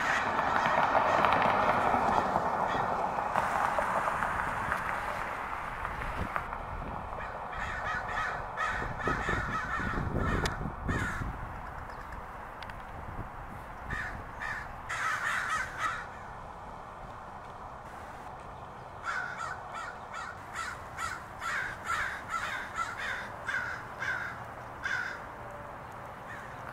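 A flock of American crows cawing from the trees in runs of short, repeated caws, about two a second, with a longer steady series near the end. In the first few seconds a rushing noise swells and fades under them.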